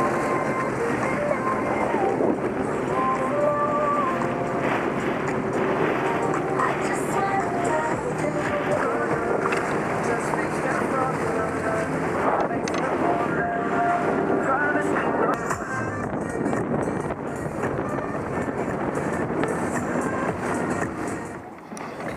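Background music with a melody of stepping notes, over the steady noise of a Sea-Doo GTX Limited running on the water with wind on the microphone.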